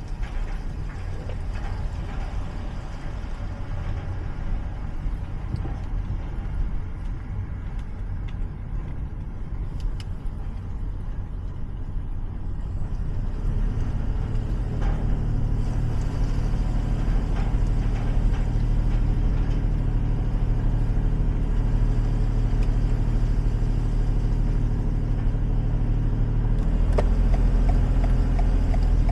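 A vehicle running with a steady low rumble that grows louder about halfway through.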